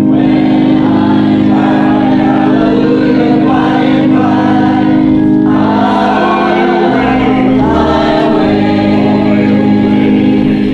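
Church congregation singing a hymn over sustained accompaniment chords, the sung notes changing about once a second.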